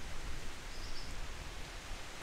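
Steady wind noise: wind blowing on the microphone with a low rumble and a rushing hiss.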